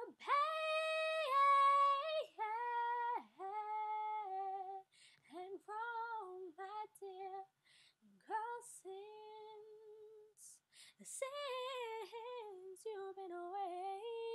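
A woman's solo voice singing without accompaniment, an early self-taught attempt: long held notes in several phrases with short breaks between them, some notes wavering. The voice is a beginner's, its tone in her own words very underdeveloped.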